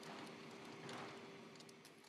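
Near silence: faint room tone with a faint steady hum and a few light clicks.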